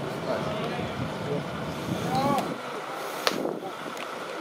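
Spectators chatting at a baseball game, with one sharp crack about three seconds in as the batter swings at the pitch.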